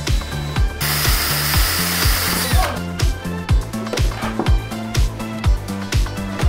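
A small handheld power drill runs for about two seconds, boring a mounting hole for a door handle in a hard-plastic RC truck body, then winds down. Background music with a steady beat plays throughout.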